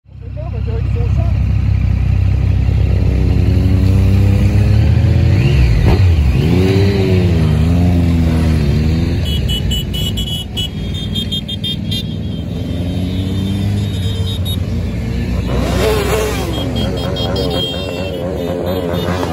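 A line of motorcycles riding past one after another, engines running at low revs, their pitch rising and falling as each bike passes, most clearly about six to nine seconds in. The sound comes up out of silence in the first second.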